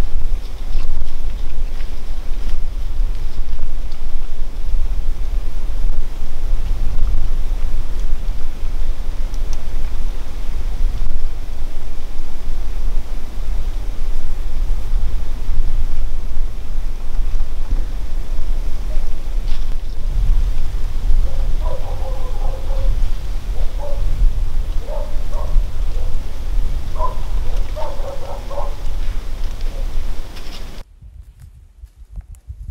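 Wind buffeting the microphone: a loud, uneven low rumble throughout. Several short pitched calls come in over the last several seconds.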